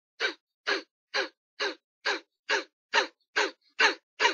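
Kapalabhati (yogic "fire breath") breathing: short, forceful exhales out of the nose in an even rhythm, about two a second. Each exhale is followed by a silent passive inhale.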